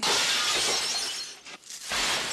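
Glass shattering in a sudden crash that dies away over about a second and a half, then a second smash near the end.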